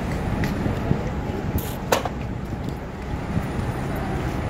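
Steady rumble of city street traffic, with one sharp click about two seconds in.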